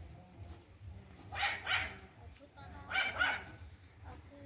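A dog barking: two pairs of short barks, about a second and a half apart.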